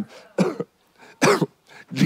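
A man coughing twice in short bursts, about half a second in and again just over a second in.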